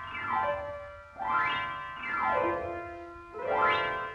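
Solo piano playing fast sweeping runs that alternately rise and fall across the keyboard, about one sweep a second, heard from an old 78 rpm record transfer.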